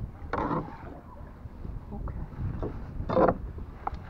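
Wind buffeting the microphone in a low steady rumble, with two brief noisy swishes, one about half a second in and one just after three seconds.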